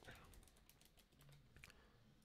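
Faint, rapid clicking of computer keyboard keys as a word is typed.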